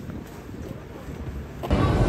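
Faint low rumble of street traffic. About a second and a half in it cuts abruptly to the louder, busier noise of a moving escalator.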